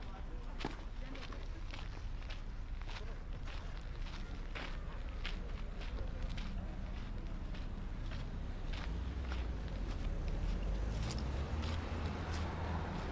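Footsteps on a sandy gravel path at a steady walking pace, a little under two steps a second, over a low rumble of road traffic that grows louder near the end.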